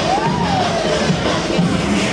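Electronic dance music with a stepping bass line. Near the start, a synthesizer tone glides up and then back down.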